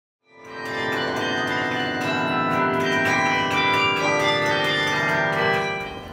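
Carillon tower bells playing a melody: many overlapping ringing tones, with new notes struck in quick succession. It fades in during the first second.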